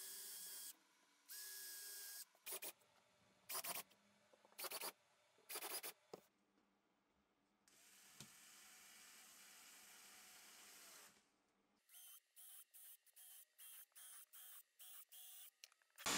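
Cordless drill running in short bursts as screws are driven through HDPE runner strips into a plywood board. Two runs of a steady whine, then several brief spurts.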